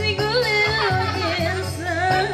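A woman singing a North Maluku qasidah into a microphone in a wavering, ornamented melody, over backing music with a steady low beat.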